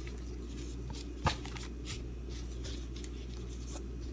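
Gloved hands spreading and pulling apart shredded kunafa pastry strands on a plastic cutting board: a soft, scratchy rustling with one sharper tap about a second in, over a steady low hum.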